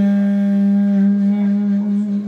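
Clarinet holding one long, steady note in its low range.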